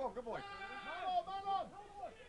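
Men shouting on a football pitch during play: overlapping voices, with one long drawn-out call about half a second in and a shorter held call around a second and a half.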